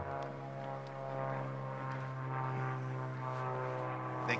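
A steady, low droning hum made of an even stack of tones that holds its pitch throughout, like an engine or an electrical hum.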